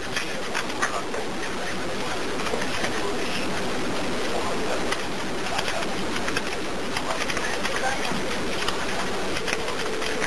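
Steady hiss of a recorded emergency phone call line, with faint, indistinct voices murmuring in the background.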